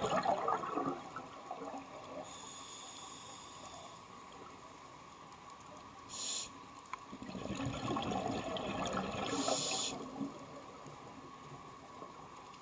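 Scuba regulator breathing underwater. A burble of exhaled bubbles comes at the start, a hissing inhale follows a couple of seconds in and again briefly around the middle, and a second, longer rush of exhaust bubbles comes in the second half.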